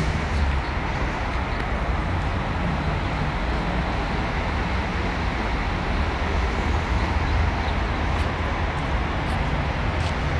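Steady background road-traffic noise: an even, constant haze with a low rumble.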